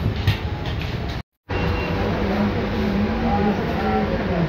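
Busy eatery din: steady low rumble and clatter with indistinct background voices, a sharp clack just after the start, and a brief drop to total silence a little over a second in.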